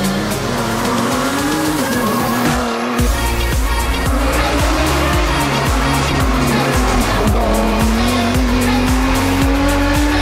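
Nissan GT-R race car's engine accelerating and backing off through tight bends, its pitch rising and falling several times, heard together with background music with a steady beat.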